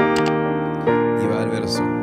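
Piano chords from an F minor, A-flat, E-flat, B-flat progression played in inversions. One chord is struck at the start and the next about a second in, and each is held and left ringing.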